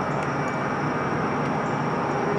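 Steady outdoor background noise: an even, rushing hiss with a faint high whine, with no distinct events.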